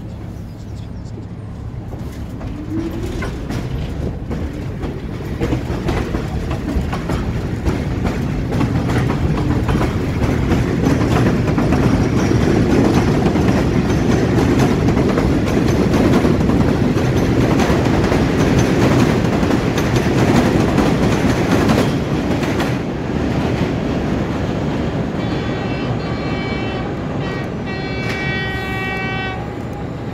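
Vintage New York City subway train running on an elevated steel structure, with rumbling and clickety-clack of wheels on rail joints. The noise builds over the first dozen seconds, stays loud, and eases after about 22 seconds. Near the end a train horn sounds for several seconds.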